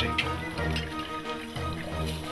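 Background music, with juice faintly trickling out of holes pierced in a carton into glasses below.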